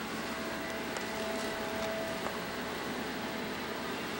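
Steady background hiss with a faint hum and no distinct sound event; a faint click about two seconds in.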